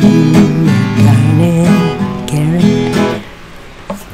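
Twelve-string acoustic guitar playing the song's accompaniment, with a bass line that moves from note to note. The playing stops about three seconds in, leaving quieter handling noise.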